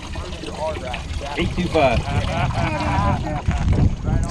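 Several people talking in the background over a steady low rumble, with water trickling from a weigh-in tub holding the catch.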